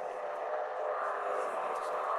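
A steady, dense drone that slowly swells louder: an intro sound effect for a horror channel.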